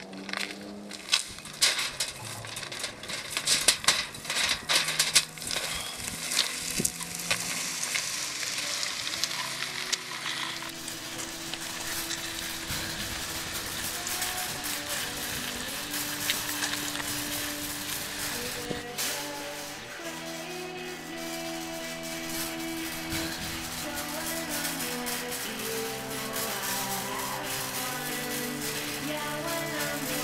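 A wire shopping cart rattling and clattering as it is pushed over rough concrete, loudest in the first few seconds. From about ten seconds in, music with long held notes comes in and carries on under the rolling noise.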